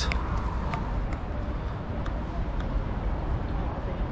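Steady outdoor ambience of an open-air shopping plaza: an even background noise with a low rumble, faint voices and a few light clicks.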